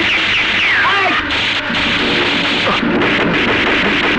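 Loud action-film soundtrack: music over a dense wall of noise, with short falling pitch glides in the first second.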